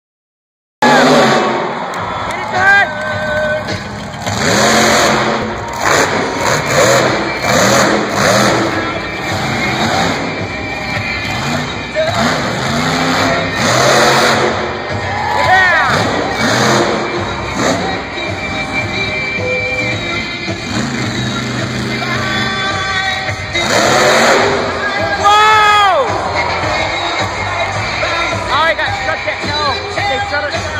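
Monster truck engine revving hard in repeated surges during a freestyle run, under loud arena PA music and an announcer's voice.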